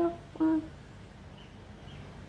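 A woman's short closed-mouth hum, a brief "mm", about half a second in, then faint room tone.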